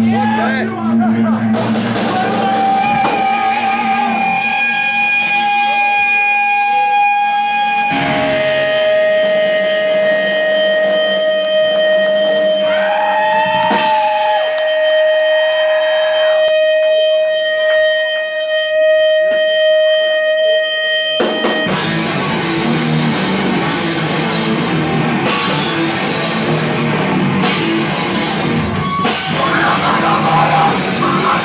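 Long held electric guitar notes ring steadily from the amplifier for about twenty seconds, dropping to a lower pitch about eight seconds in. About 21 seconds in, the full band comes in abruptly with distorted guitars and a drum kit playing loud heavy rock.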